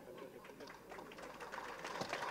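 Audience clapping: scattered claps about half a second in that thicken into applause, growing louder toward the end.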